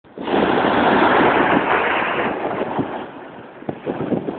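Small waves breaking and washing up the sand: a loud rush that starts suddenly and fades away after about two seconds.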